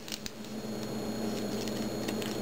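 Faint clicks and handling noise from the plastic parts of a Transformers Deluxe Camaro Concept Bumblebee toy as its front section is rotated and moved into place.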